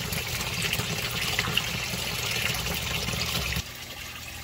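Water pouring in a steady stream out of the end of a PVC effluent pipe and splashing into the water of a sump. About three and a half seconds in it cuts off suddenly, leaving a much quieter steady hiss.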